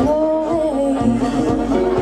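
A woman singing long, held notes into a microphone, accompanied by acoustic guitar in a live pop band performance.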